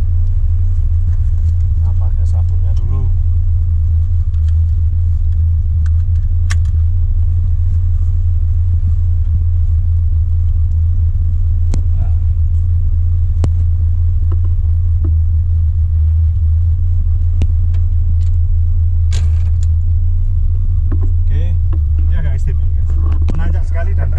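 Old Toyota Land Cruiser's engine idling with a steady low drone, heard from inside the cab, with a few sharp clicks as a seat-belt harness is fastened.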